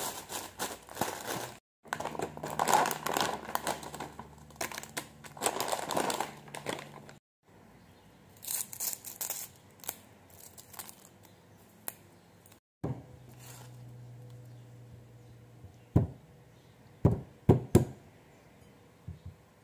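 Clear plastic bag crinkling and rustling as fresh leaves are handled and pulled from it, with sparser rustles later. Near the end, a few sharp knocks on a wooden cutting board.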